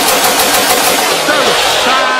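Loud, dense rushing noise of a logo-intro sound effect, with a short falling pitched sweep about a second and a half in.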